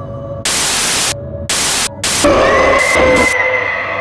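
Bursts of TV-style white-noise static, a glitch sound effect, cutting in and out in about three chunks over an ambient music drone. In the second half a high whine slides up and holds.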